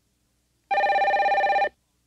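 Electronic telephone ring: a single warbling, trilling burst about a second long, starting just under a second in.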